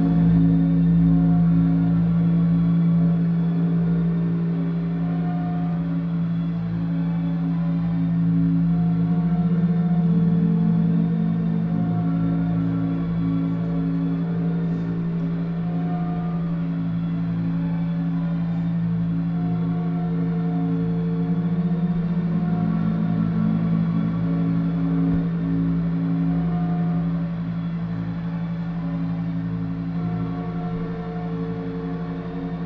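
Live electronic drone music: a loud steady low tone with layered sustained tones above it that slowly swell and fade, without beat or speech.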